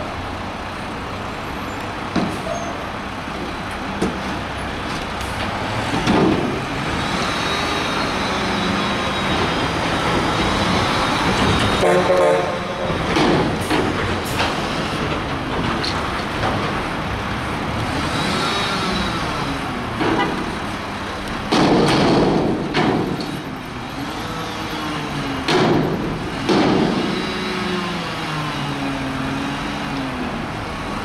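McNeilus front-loader garbage truck lifting a steel dumpster over its cab and emptying it. The diesel engine revs up and down several times to drive the hydraulic arms, with loud bangs and clangs as the bin knocks and its contents drop into the hopper.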